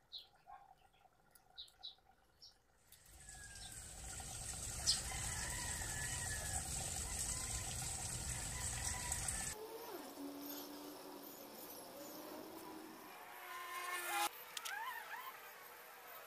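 Quiet outdoor ambience: a few light clicks as hands work a small bonsai's branches and wire, then a steady rushing noise for about six seconds, and faint bird chirps near the end.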